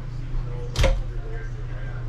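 A single sharp click about a second in as the mirrored door of a wooden medicine cabinet is pulled open, over a steady low hum.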